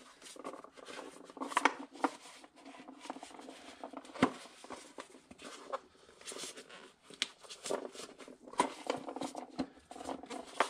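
Hands handling a plastic air-filter housing and a paper filter element: irregular light clicks, taps and rustles, with the sharpest knocks about four seconds in and again about seven seconds in.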